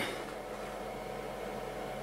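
Steady background hum and hiss, even throughout, with no distinct knocks or clicks.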